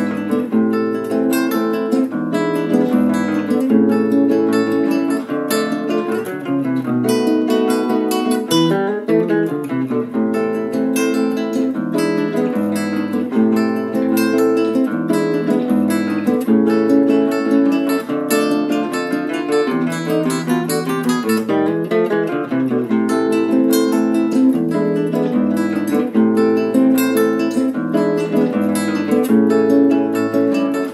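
Two acoustic guitars playing a choro duet together, a continuous stream of plucked notes and chords.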